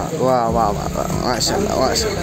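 Speech only: people's voices talking loudly, with some drawn-out, wavering vocal sounds.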